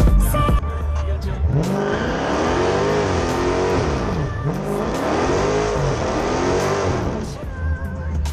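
A car engine is revved repeatedly while standing still, its pitch climbing and falling in several sweeps over about six seconds. Background music plays underneath.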